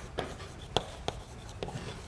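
Chalk writing on a blackboard: a few sharp taps as the chalk strikes the board, with faint scraping between them.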